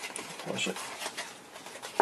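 Light clicks and rustle of a plastic label-tape cassette and its small box being handled on a wooden desk, with a brief low murmur about half a second in.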